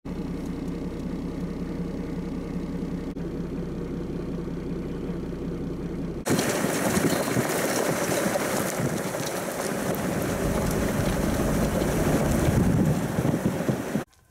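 A Toyota LandCruiser 60 Series four-wheel drive on the move. For about six seconds there is a steady engine drone. Then the sound cuts suddenly to a louder rushing rumble of tyres on a rough gravel track, with air noise at the open side window.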